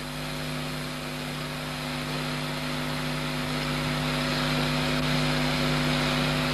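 A steady hum of several fixed pitches under an even hiss, slowly getting louder.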